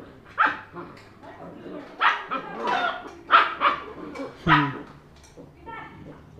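Young puppies, a long-coat German Shepherd and a Labrador, giving a series of short, high barks and yips as they play-fight through a wire mesh cage.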